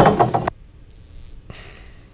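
Recorded sound effect of a diving board, heard as knocking thumps, playing back over the studio and cutting off about half a second in, leaving quiet room sound.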